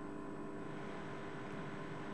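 Steady, faint room hum with a few thin electrical tones and a light hiss; no distinct sound events.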